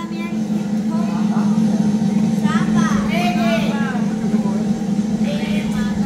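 A steady low rumble swells up over the first second and holds. Voices call out over it twice.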